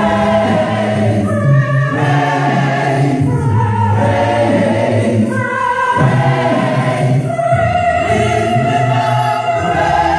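Large gospel mass choir singing a cappella in several parts, with no instruments; the voices hold sustained chords that change every second or two.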